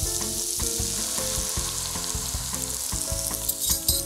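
A stew of dried fruit and onions sizzling steadily in a hot pot as red wine is poured in.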